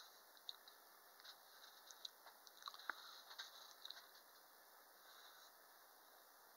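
Near silence, with a few faint, short clicks over the first four seconds.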